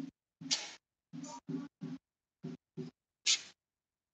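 Marker pen squeaking and scratching on a whiteboard in about eight short strokes while letters are written, some strokes with a low squeak and the loudest ones mostly hiss.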